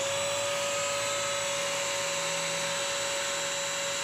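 Bissell CrossWave wet/dry vacuum running its self-cleaning cycle in the cleaning tray: the motor and brush roll run steadily with water flushing the brush roll, a steady whine over a rushing noise.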